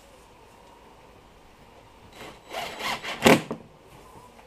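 Cordless drill driving a screw through a fire-hose hinge into a plastic cooler, run in a few short bursts starting about two seconds in, the last burst the loudest.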